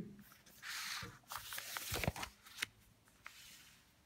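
Pages of a book being turned, paper rustling for about two seconds with a few light taps.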